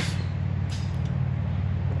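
A steady, low mechanical hum, like an engine idling, holding an even pitch throughout.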